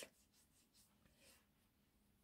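Near silence, with a few faint, soft rubbing strokes of fingertips spreading face primer over skin.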